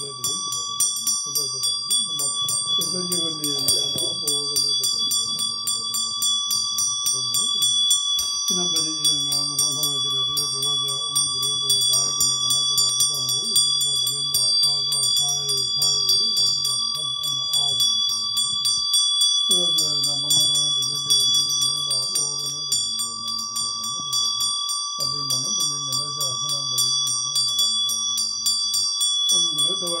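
A low male voice chanting prayers in long, nearly level-pitched phrases, with short breaks between them. Under it a small bell rings continuously with a rapid clatter.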